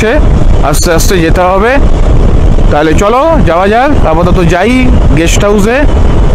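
A man's voice talking over the steady rush of wind on the microphone and the running single-cylinder engine of a KTM 390 Adventure motorcycle at cruising speed.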